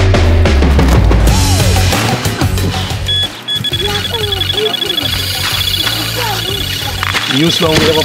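Background music, and from about three seconds in an electronic carp bite alarm beeping rapidly and without a break: a fish has taken the bait and is running line off the reel.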